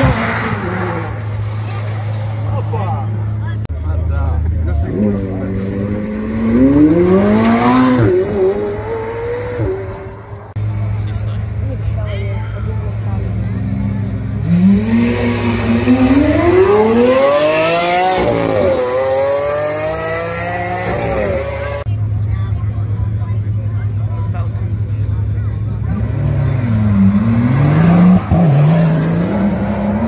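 Supercars accelerating hard past one after another, three runs in all, each engine note climbing in pitch through the gears and then dropping away as the car goes by. The middle run is a Lamborghini Aventador's V12. A steady low engine hum runs underneath.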